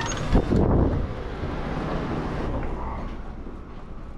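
A commercial glass door pushed open by its push bar, with a loud clack about half a second in, followed by a steady rumble of wind buffeting the microphone.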